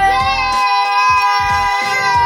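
Children's voices holding one long high note together over background music.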